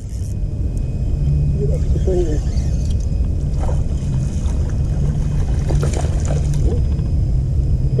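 A loud, steady low rumble with a low hum that swells and fades a few times, under faint talk.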